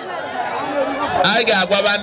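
Crowd chatter: several people talking at once, with one voice holding a steady pitch in the second half.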